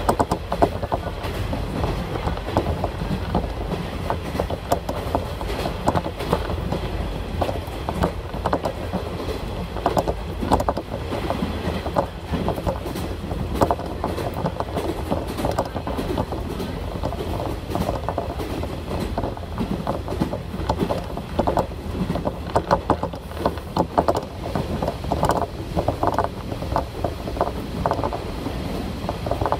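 Diesel railcar running at speed, heard from inside the passenger cabin: a steady low rumble with the wheels clattering over rail joints in irregular clusters of knocks.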